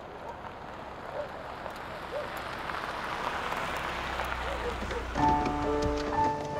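A soft hiss swells and fades, with faint short chirps scattered through it. About five seconds in, background music begins with sustained chords.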